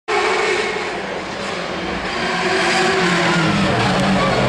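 Open-wheel single-seater race car engine at high revs, approaching at speed on a hillclimb course and growing louder towards the end, its engine note shifting in pitch as the driver works through the revs.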